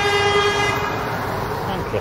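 Vehicle horn sounding one steady toot that fades out within the first second and a half, over low street traffic noise.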